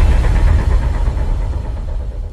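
Deep low rumble slowly dying away: the tail of a cinematic bass-boom sound effect.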